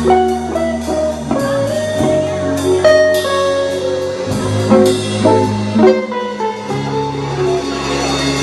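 Live band playing an instrumental passage: electric bass line, drum kit with cymbal strikes, and a guitar, with a melodic lead line over them.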